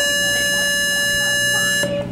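Show-jumping start buzzer: one steady, buzzy electronic tone held for about two seconds, then cut off sharply, signalling the rider to begin the round.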